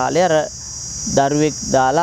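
Steady high-pitched drone of insects, unbroken under a man's speaking voice.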